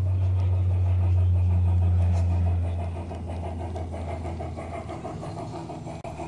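G-scale garden-railway model steam locomotive and its freight wagons running past: a steady motor hum that is loudest for the first few seconds and drops off about three seconds in, over a fast, even clicking of the train on the track.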